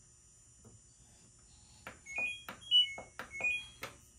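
LG front-load washing machine starting a wash cycle: its control panel plays a short tune of electronic beeps, stepping up and down in pitch, with a few sharp clicks, beginning about two seconds in.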